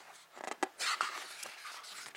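A picture-book page being lifted and turned by hand, a short papery rustle from about half a second to just past one second in.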